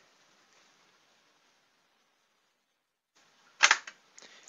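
Near silence for about three seconds, then one short, sharp burst of noise near the end.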